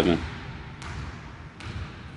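A basketball dribbled on a hardwood gym floor at a distance: faint bounces a little under a second apart, echoing in the large hall.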